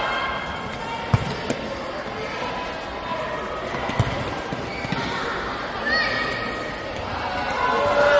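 Futsal ball being kicked and struck on a hard indoor court: sharp thuds about a second in, again just after, and around four seconds. Children's voices and shouts from players and spectators run underneath.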